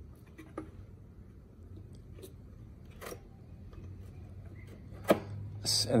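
A few sharp clicks and taps of a metal hardware bracket being handled and set against a wooden panel, spaced a second or more apart, over a low steady hum.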